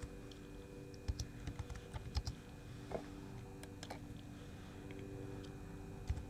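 Computer keyboard typing: a handful of scattered keystrokes, most of them in the first half, over a faint steady hum.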